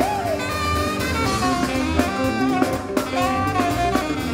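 Live band playing an upbeat groove: a horn section holds notes over a drum kit.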